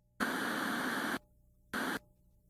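Two bursts of television static hiss. The first lasts about a second, and a second, shorter one comes near the end.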